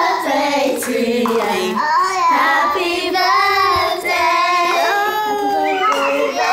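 Several children's high voices singing together, with long held notes gliding up and down.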